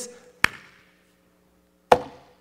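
Two sharp knocks, one about half a second in and one near the end, each ringing out briefly, over a faint steady hum.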